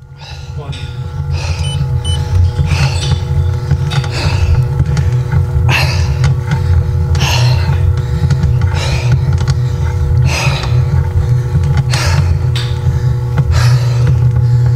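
A man breathing hard, a breath roughly every second, over a loud steady low hum, worn out from pedalling an exercise bike.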